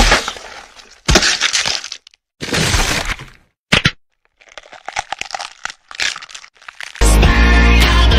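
A string of sudden cracking, breaking crashes: a big one at the start and again about a second in, a shorter one near three seconds and a sharp snap near four, each dying away, then scattered small crackles. Music starts again about a second before the end.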